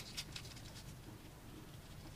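Faint, scattered light clicks and taps of metal parts being handled as the pulley is fitted onto the shaft of a 24-volt alternator, most of them in the first half second.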